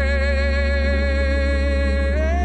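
Gospel song: one long held note, with a slight waver, over a steady low bass.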